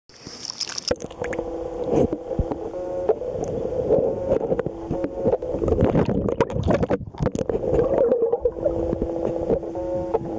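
A camera going from the water's surface down under water: a brief airy splash in the first second, then muffled underwater sloshing with many knocks against the camera. A steady hum comes and goes in long stretches.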